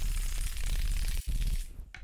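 Ice cubes rattling hard inside a stainless-steel cocktail shaker as it is shaken to chill the drink. The rattling stops shortly before the end.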